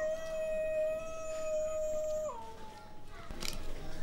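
A jackal howling: one long call held at a steady pitch, dropping lower a little over two seconds in and fading out soon after.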